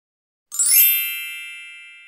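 A bright, sparkly chime sound effect that comes in about half a second in and rings on, fading away slowly.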